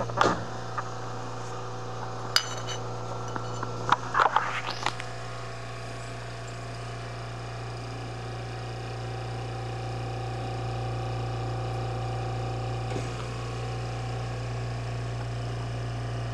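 Handling noise: a few light clicks and a short rustle in the first five seconds as porcelain figurines and the camera are moved over a bedspread, over a low steady hum.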